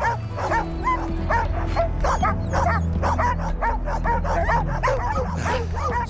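A team of sled dogs yipping, whining and barking in quick, repeated calls, two or three a second. Background music with low sustained notes runs underneath.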